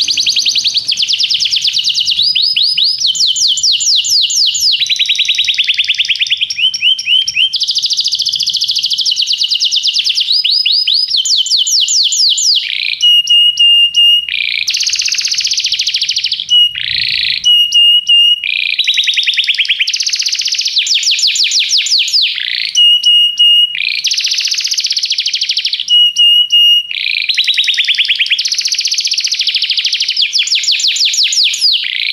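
Domestic canary singing a long unbroken song of rapid trills: each tour is a quick run of the same repeated note, lasting a second or two before the bird switches to the next. Several short held high notes sound between tours about halfway through and again later.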